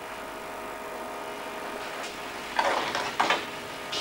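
Low steady hum, with two brief scraping, rustling handling noises about two and a half and three seconds in, from hands at work under the plate.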